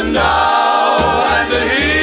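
1956 doo-wop record: a vocal group holding a sustained harmony, with bass notes moving beneath.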